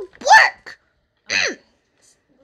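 A child's voice makes two short wordless vocal sounds about a second apart; the second slides steeply down in pitch.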